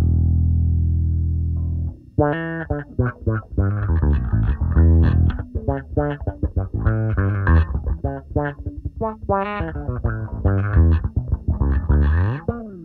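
Electric bass played through an envelope filter effect set to sweep upward: a held low note for about two seconds, then a busy funk run of short plucked notes, each with an audible rising filter sweep on its attack.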